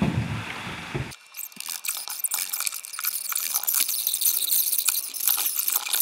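Light rustling and crackling with many small clicks, high-pitched and without any low end from about a second in.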